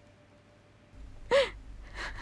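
A woman crying: one sharp sobbing gasp about a second in, its pitch rising and falling, then a weaker breath near the end.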